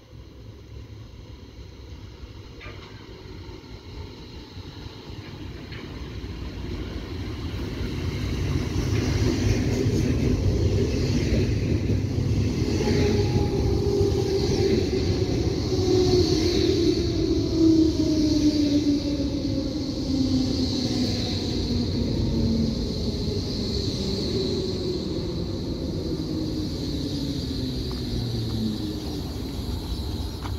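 Berlin S-Bahn class 480 electric train pulling into a station. Its running noise grows louder over the first ten seconds or so. Then the traction motors' whine falls steadily in pitch as it brakes, dying away as it stops near the end.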